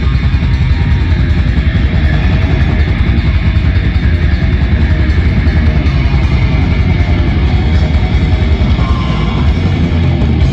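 A metal band playing live through a stage PA: distorted electric guitars, bass and drums. The music is loud and steady, with a heavy low end.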